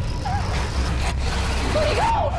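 Horror-trailer sound design: a steady low rumble under a dense noisy bed, with short wavering cries about halfway through and again near the end.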